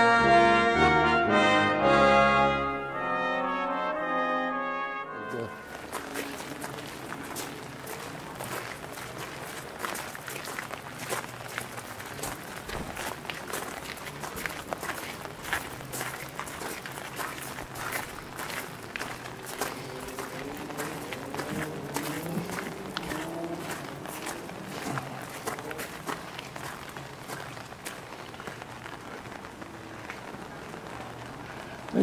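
Brass music with trumpets and trombones plays for about five seconds and then cuts off. After that there is outdoor ambience of people walking in the rain: many small irregular taps of raindrops on umbrellas and footsteps on wet stone paving, with faint voices in the second half.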